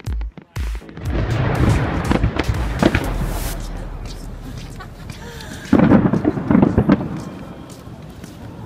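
Fireworks going off: a loud burst about a second in, crackling and fading over several seconds, then a second loud burst near six seconds that also fades.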